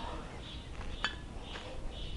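Quiet background noise with a single small click about a second in; no music is playing.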